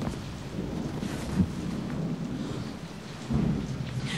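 Steady rain with a low rumble of thunder, a storm ambience without speech.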